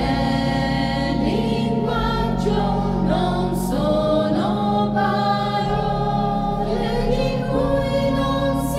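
Choir singing an Italian church hymn in sustained, held notes over a steady low accompaniment.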